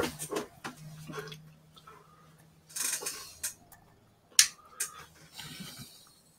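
Handling noise at a desk: a few scattered clicks and small clatters with rustling, the sharpest click about two-thirds of the way through.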